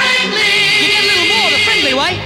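The final held chord of a 1970s advertising jingle: a group of voices with a band sustaining one long note with vibrato, which cuts off at the close.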